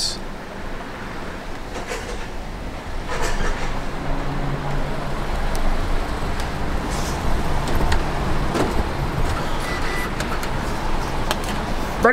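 Car engine and road noise heard from inside the cabin as the car creeps slowly up to a gate and waits, with a low steady hum through the middle and a few light clicks and knocks.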